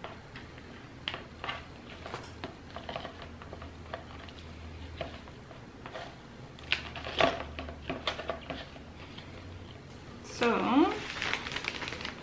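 Dry sphagnum moss crackling and rustling as it is pulled apart and pressed into the bottom of a plastic plant pot, in irregular small clicks and scratches. A brief voice sounds near the end.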